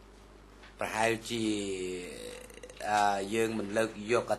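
Speech: a man talking, starting about a second in, with drawn-out vowels, over a steady low hum.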